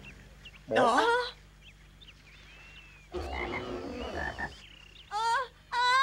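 Cartoon frog croaking: a short wavering croak about a second in, a rougher croaking stretch in the middle, and short croaks near the end.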